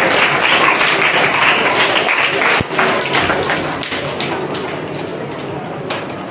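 An audience clapping, loudest at first and dying away over the last few seconds.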